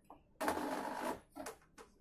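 A short mechanical rattle lasting under a second, followed by a few sharp clicks.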